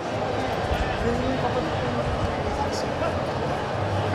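Crowd chatter: many people talking at once in a steady, even hubbub, over a low rumble.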